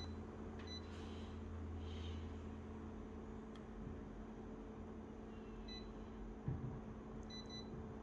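Photocopier touchscreen giving a few short, high key-press beeps, one near the start, one just after and a few near the end, over a steady low machine hum.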